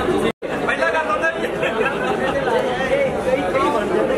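Several people talking over one another in a crowded hall, broken by a brief cut to silence less than half a second in.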